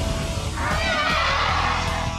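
Dramatic action music with a shrill, wavering creature roar sound effect laid over it, from about half a second to a second and a half in.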